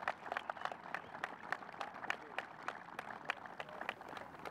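Light, scattered applause from a small crowd: single hand claps come irregularly, several a second.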